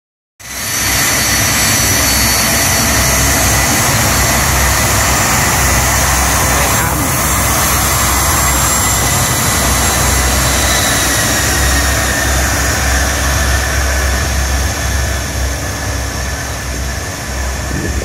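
BAe 146-200's four Lycoming ALF502 turbofan engines running loudly as the jet taxis past and turns away: a steady rumble under several high whining tones, one of which falls slightly in pitch near the end.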